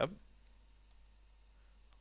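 A faint computer-mouse click over quiet room tone with a low steady hum, as a tab is selected in the software.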